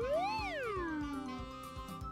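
A cartoon sound effect: a single pitched glide that swoops up and then slides slowly back down over about a second and a half, over light background music.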